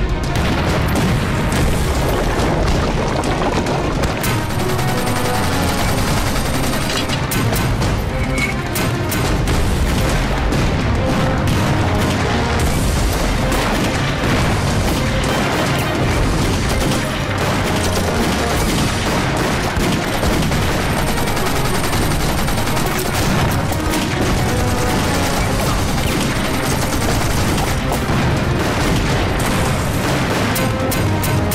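Battle-scene film soundtrack: dramatic music over a dense, continuous barrage of explosions and gunfire from an artillery bombardment.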